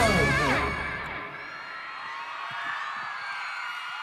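A live rap track's backing music ends about a second in, leaving an arena crowd cheering and screaming.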